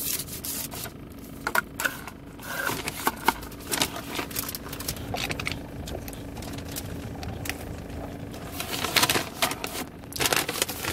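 Handling noise in a car: rubbing, scraping and a few sharp clicks as a paper takeout bag and drink cup are moved around the center console, over a steady low hum that fades near the end.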